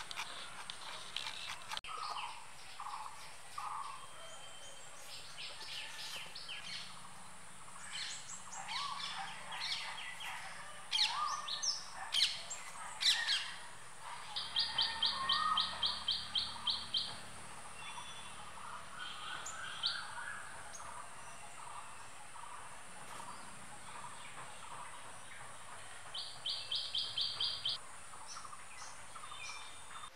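Birds chirping and calling, with two runs of quick, evenly spaced high chirps, about five a second, one around the middle and one near the end.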